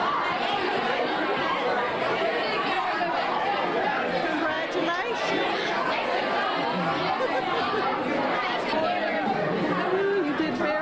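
A crowd of teenagers chattering, many voices talking over one another at once, with some close to the microphone.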